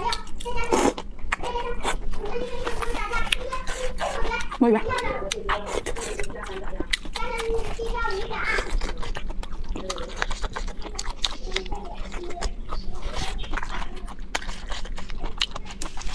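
Close-miked eating of noodles and vegetables from a spicy hot-pot bowl: chewing and slurping with many sharp, wet mouth clicks, and short wordless vocal sounds in between.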